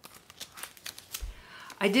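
Handling of a large picture book: a run of small crackles and ticks from the paper and cover as it is moved, with a soft low thump about a second in.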